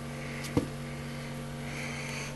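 A steady low hum, with one short knock of handling noise about half a second in as the lizard is pried off a wire shelf.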